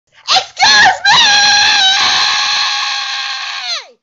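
A woman screaming: two short yells, then one long high scream held for nearly three seconds, dropping in pitch as it ends.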